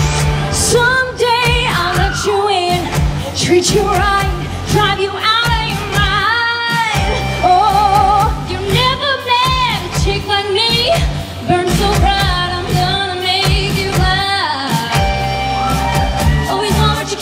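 Two women singing a pop duet into microphones over backing music with a steady beat; the singing comes in about a second after an instrumental lead-in.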